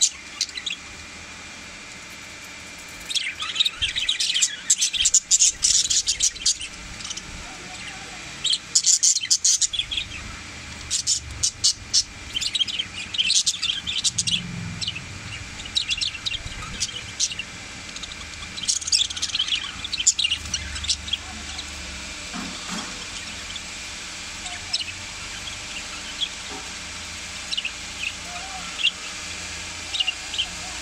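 A flock of budgerigars chirping and chattering in bursts of quick, high chirps, busiest in the first twenty seconds and growing sparser toward the end.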